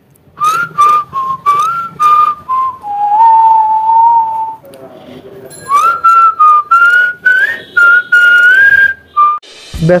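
A whistled tune: a single clear tone stepping from note to note, with a longer, lower held note in the middle, over a light clicking beat.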